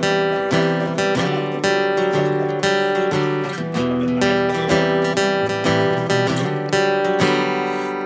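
Steel-string acoustic guitar strummed in a steady rhythm, playing the chord introduction of a sertanejo song with regular chord changes.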